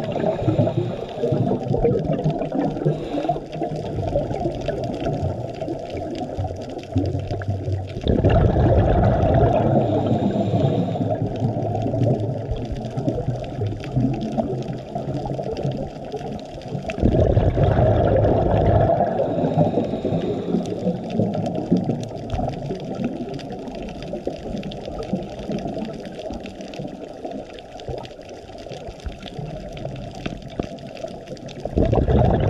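Muffled underwater sound heard through a camera housing: loud bursts of a scuba diver's exhaled regulator bubbles, roughly every nine seconds (near the start, about 8 seconds in and about 17 seconds in), each lasting a few seconds, with quieter water noise between the breaths.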